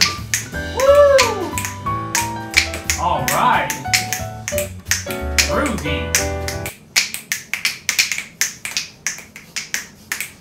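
Upbeat music with a bass beat and finger snapping in time with it. About two-thirds of the way through, the music cuts off and the finger snaps carry on alone, about three a second.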